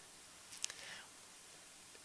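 A pause in a man's talk into a close microphone: faint room tone with a short mouth click and a soft breath about half a second in.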